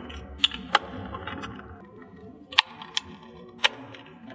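Hard plastic clicking and snapping as the weatherproof covers of a Ubiquiti NanoStation and an ETH-SP Ethernet surge protector are pressed back into place over the cables. There are several sharp, irregularly spaced clicks.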